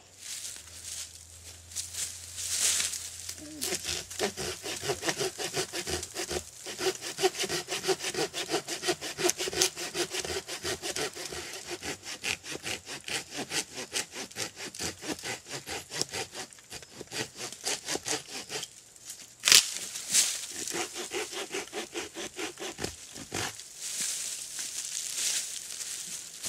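Fiskars folding locking saw cutting through a thick old pine root in quick, steady back-and-forth strokes. About three-quarters of the way through, the strokes pause briefly, then a single sharp knock (the loudest sound) is heard, and the sawing resumes.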